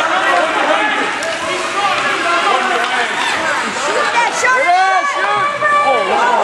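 Spectators' voices at an ice hockey game: many people talking and calling out at once, overlapping, with no single clear speaker.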